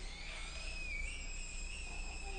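A thin, high whistling tone, held steadily with a slight waver in pitch.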